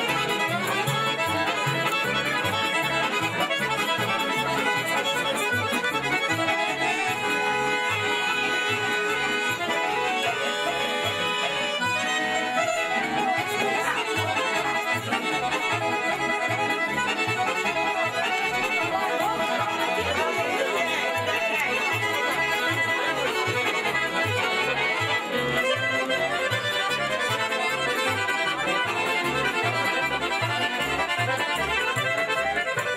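Accordion-led Serbian folk dance music for the kolo, with a steady, even bass beat.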